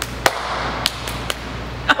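Four sharp taps, roughly half a second apart, over a steady low hum, with a short laugh at the very end.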